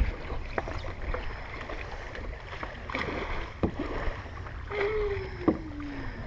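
A plastic Corcl basket boat being pushed off and paddled with a double-bladed paddle: a handful of sharp knocks of paddle and hull with water splashing. Near the end, a drawn-out tone falls in pitch.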